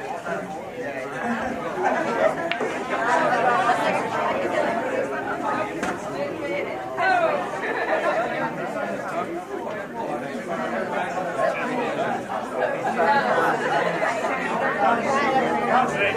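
Crowd chatter: many people talking over one another at once, a steady mix of voices with no single clear speaker.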